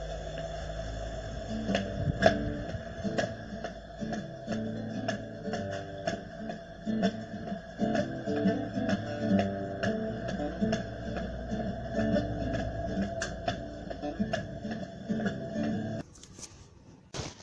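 Classical acoustic guitar being strummed and picked, with chord strokes in a steady rhythm about twice a second.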